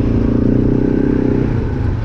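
Engine of a quad idling steadily, with a side-by-side's engine running close by and louder at first, fading about a second and a half in.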